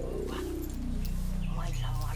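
Soundtrack synthesizer tone sliding down in pitch over a steady low bass drone, with a few short, sharp cries about half a second in and again near the end.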